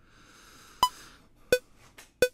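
DAW metronome count-in: two short electronic clicks about 0.7 s apart, the first higher-pitched as the accented downbeat and the second lower, counting in a vocal take.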